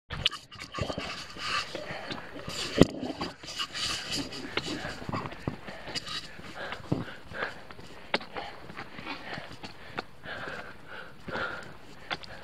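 Hiker walking on a rocky, gravelly mountain trail: irregular footsteps and knocks and rubbing from the handheld camera pole, the loudest knock about three seconds in, with breathing audible.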